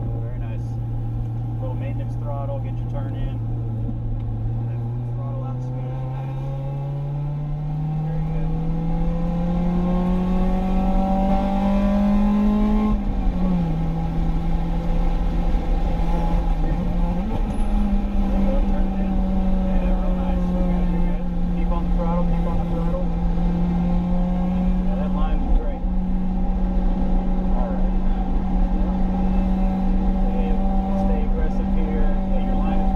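Acura RSX Type-S's K20 2.0-litre four-cylinder engine heard from inside the cabin under track driving. It holds steady, then pulls up through the revs for several seconds, drops sharply as it shifts about halfway through, dips briefly again, and climbs back to run high.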